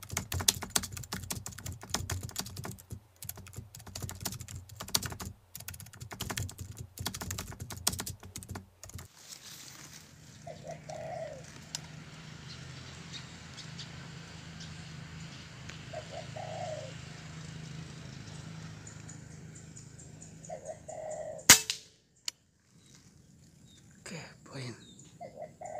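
A rapid typewriter-style clicking effect for the first nine seconds or so, then a faint steady hum with three soft dove coos. About 21 seconds in comes one sharp crack, the loudest sound, the shot of a Bocap Bullpup 360cc PCP air rifle fired at a spotted dove.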